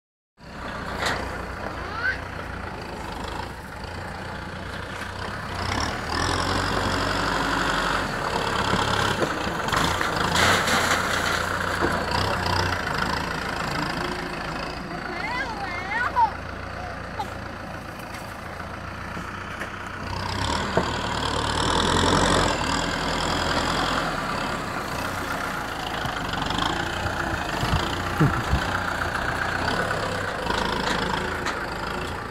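Kubota M6040 SU tractor's four-cylinder diesel engine running while its front dozer blade pushes soil, getting louder for several seconds twice as it works.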